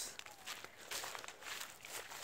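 Faint footsteps walking along a dirt path strewn with dry stalks and leaves, a few soft steps a second.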